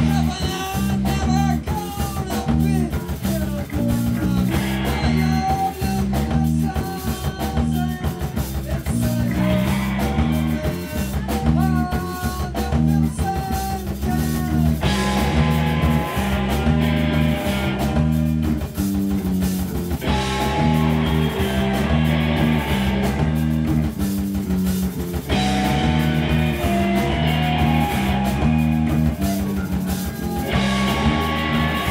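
A live rock band playing: two electric guitars, bass guitar and drum kit, the bass and guitars repeating a riff, with brighter guitar layers coming and going every five seconds or so.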